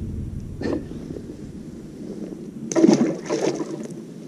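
A largemouth bass being let go back into the lake, with one splash lasting about a second, about three quarters of the way through.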